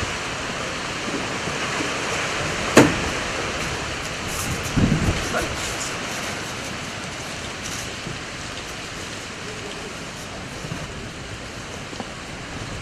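Steady outdoor background hiss, with one sharp click or knock about three seconds in and a brief low voice around the middle.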